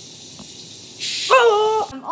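A child's voice giving a short hiss, then a held, breathy "hoo"-like vocal sound about a second in. It is not words.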